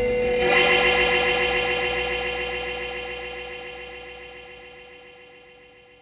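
Electric guitars played through effects pedals sound a final sustained, wavering chord that swells about half a second in and then rings out, fading steadily away.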